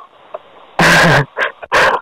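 A dog barks twice, loud and short, the second bark higher and more yelping.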